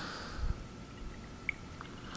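A quiet pause: faint room hiss with a soft low thump about a quarter of the way in and a small click near the middle.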